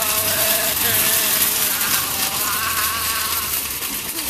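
Metal shopping cart being towed fast over a dirt and gravel road: a loud, steady rattling hiss from its wheels and wire basket, with a wavering buzzing whine over it.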